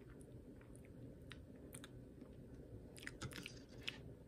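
Faint wet mouth and lip clicks of someone tasting a mouthful of thin, runny mango Greek yogurt, with a denser run of clicks about three seconds in, over a low room hum.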